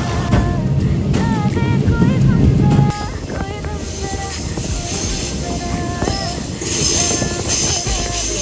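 Passenger train rumbling across a steel truss bridge, heard from the carriage door, for about three seconds before the rumble cuts off suddenly. Background music with a light melody plays throughout.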